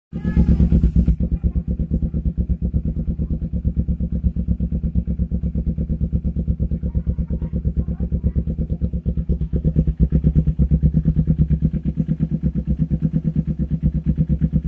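Kawasaki Ninja 250R's carbureted parallel-twin engine idling through a short aftermarket slip-on muffler: a steady, even exhaust beat, a little louder during the first second.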